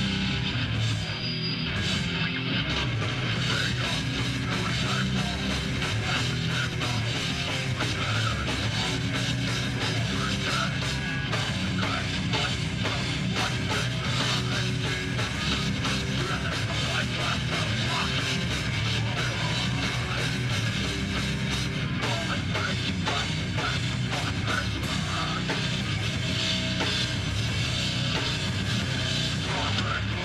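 A hardcore band playing live at full volume: distorted electric guitars, bass and a pounding drum kit, continuous and without a break.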